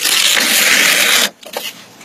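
Scotch tape being peeled off skin: a loud ripping noise that starts abruptly and cuts off about a second and a quarter later, followed by a few faint rustles.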